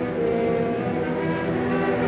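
Orchestral film score playing slow, sustained chords.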